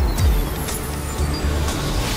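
Logo-sting sound effects: a deep steady rumble with a low falling boom just after the start, a few sharp hits, and a thin high tone gliding slowly downward, leading into dark-toned music.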